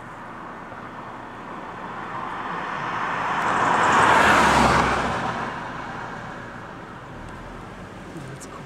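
A car passing by on the road, its tyre and engine noise swelling to a peak about four seconds in and then fading away.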